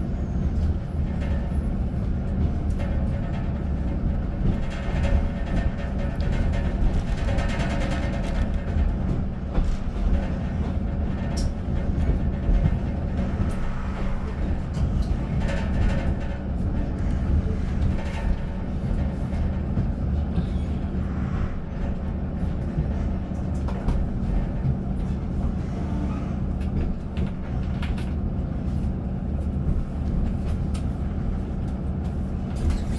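Inside the passenger saloon of a Class 156 diesel multiple unit, its underfloor Cummins diesel engine drones steadily over the rumble of the wheels on the rails. Short clicks and clatter come through as the wheels cross the track.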